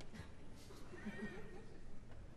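Hushed concert hall just after the applause has died away, with a brief, faint voice-like sound about a second in.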